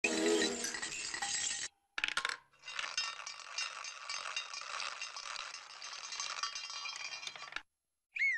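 Cartoon sound effect of a tall stack of china plates rattling and clinking as it teeters. The clatter runs in two long stretches, broken by a short silence and a few sharp clicks a little before two seconds in, and stops just before the end.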